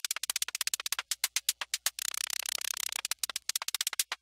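Live-coded electronic music: a synthesized SuperCollider hi-hat plays very fast runs of short ticks, switching between separate strokes and a dense blur of hiss as the pattern's speed changes from cycle to cycle.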